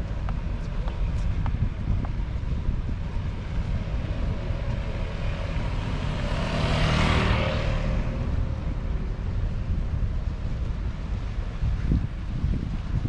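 Wind buffeting the microphone, with an engine passing by that swells to its loudest about seven seconds in and fades away over the next second or two.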